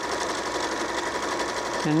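Janome 3160 computerized sewing machine running steadily at speed, sewing a darning stitch automatically: even, rapid needle strokes building a dense mend.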